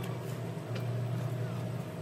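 A steady low hum with a couple of faint soft clicks of chewing, about a second apart.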